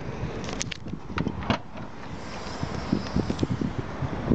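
Outdoor background noise: a steady low rumble, with a few light clicks and taps between about half a second and a second and a half in.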